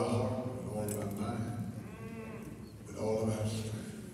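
A preacher's voice through a microphone, drawn out in long, sung-out tones rather than ordinary speech: two long held phrases, the second starting about three seconds in.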